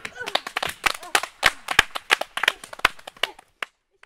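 Rapid, irregular hand claps, several a second, as a few people clap, with faint voices under them. The clapping breaks off into silence shortly before the end.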